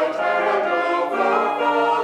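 A small mixed choir singing a hymn in sustained chords.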